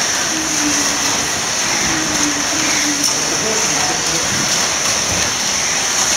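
1/32-scale slot cars running flat out on a multi-lane plastic track: a steady rushing hiss with a constant high-pitched whine from several small electric motors and guide braids in the slots, with voices faint underneath.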